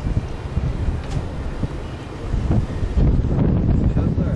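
Wind buffeting the camera microphone: a loud, uneven low rumble that eases a little about halfway through and swells again near the end.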